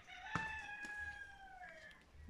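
A rooster crowing once, faint: one long call that holds and then falls gently in pitch over about a second and a half, with a short click just as it begins.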